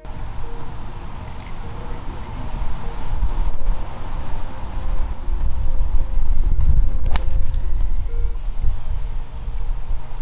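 Wind rumbling across the microphone, with a single sharp crack about seven seconds in: a golf club striking a ball.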